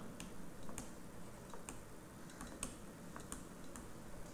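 Faint, irregular light clicks and taps, about a dozen spread over four seconds, from the input device as a word is handwritten on the screen.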